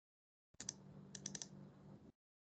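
A few faint clicks of computer keys over a low hum, heard through a video-call microphone. The sound cuts in abruptly about half a second in.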